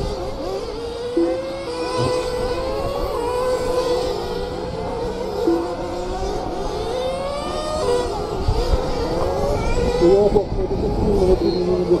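Several radio-controlled race cars running laps together, their small motors whining and rising and falling in pitch as they accelerate and slow through the corners.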